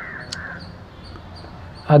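A crow cawing once near the start, a short call in two parts.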